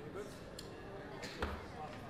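A single dull thud at the roulette table about one and a half seconds in, with a few lighter clicks before it, over a murmur of voices.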